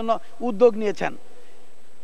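A man speaking into a microphone, breaking off about a second in, followed by a pause with only a faint steady hum.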